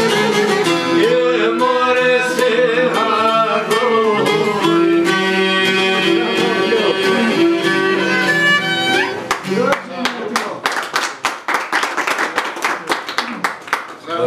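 Albanian folk song: a man singing over violin and a long-necked plucked lute. About nine seconds in the singing stops and the instruments close with a run of rapid plucked strokes, several a second, until the song ends.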